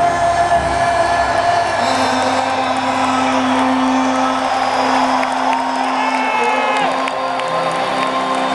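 Live band music in an arena as a song ends: a guitar holds long, ringing notes while the crowd cheers and whoops.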